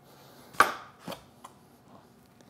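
A chef's knife cutting down through a peeled butternut squash and knocking on the cutting board: one sharp knock about half a second in, a softer one about a second in, then a faint tick.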